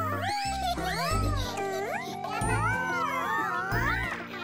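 Cartoon character voices making wordless, pitch-gliding 'ooh' sounds, one long rising tone through the second half, over children's background music with a steady bass line.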